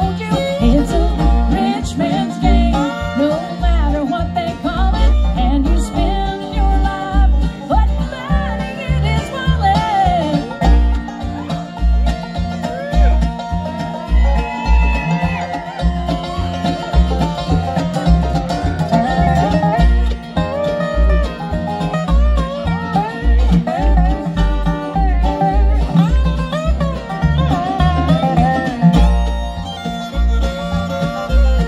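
Live bluegrass band playing: banjo, fiddle, mandolin and acoustic guitars over an upright bass that keeps a steady beat.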